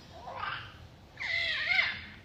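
A baby babbling in a high-pitched, squeaky voice: a short faint sound about half a second in, then a longer vocal sound bending up and down in pitch.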